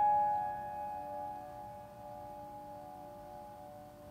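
A Steinway & Sons grand piano's last struck notes ringing on and slowly dying away, with no new keys played.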